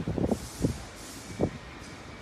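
Clunks from an electric AGV stacker forklift being worked: a quick cluster of dull knocks at the start, then single knocks about half a second and a second and a half in, with a brief hiss between them.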